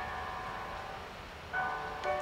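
Classical cello-and-piano music: a chord rings and fades away in the hall, then a new chord comes in about one and a half seconds in.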